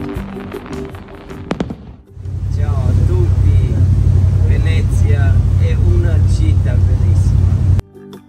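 Music with a few sharp pops fades out. About two seconds in, the steady low drone of a boat's engine starts, with a man talking over it. The drone cuts off suddenly near the end.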